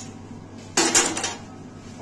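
A short metallic clatter, a quick cluster of clinks just under a second in, as steel scissors are set down on the metal bed of a toroidal coil-winding machine.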